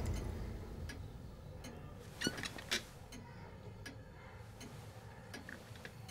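A fading tail of sound in the first second, then quiet room tone with a few faint, irregular clicks, the clearest two about two and a half seconds in.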